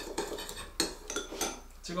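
Metal spoon stirring a soy-sauce seasoning in a small bowl, a quick run of clinks and scrapes against the bowl as the sugar and syrup are mixed in.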